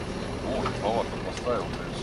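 Off-road vehicle engine idling with a steady low hum, with faint voices talking in the background.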